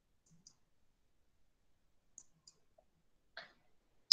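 Near silence broken by faint computer mouse clicks, two quick pairs about two seconds apart, as the presentation slides are advanced.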